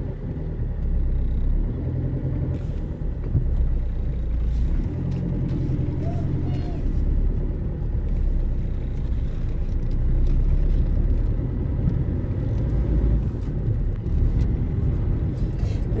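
Car cabin noise while driving: a steady low rumble of engine and road heard from inside the car.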